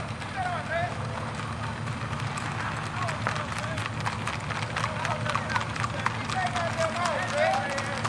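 Hooves of several horses clattering on a paved road as riders go by, with people's voices calling out over a steady low hum.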